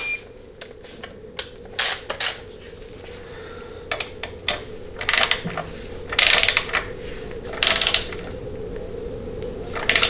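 Torque wrench ratchet clicking in several short bursts as it tightens the band adjustment screw of a Ford C6 automatic transmission toward 120 inch-pounds. The longest and loudest strokes come about five to eight seconds in, over a faint steady hum.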